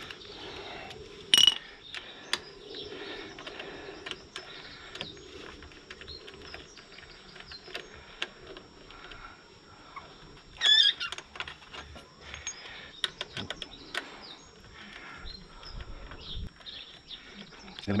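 Pet ferrets playing, with a few loud, sharp, high-pitched squeals: one about a second and a half in and a longer cluster about eleven seconds in. The squeals come from the female rebuffing the male in mating season. Light clicks of hand tools on the motorcycle's brake caliper are scattered throughout.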